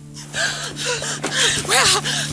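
Women gasping and crying out in shock, breathy sounds that rise and fall and are loudest near the end.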